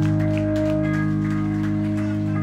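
Amplified electric guitar and bass holding steady, ringing tones over a low amplifier hum, with no strumming.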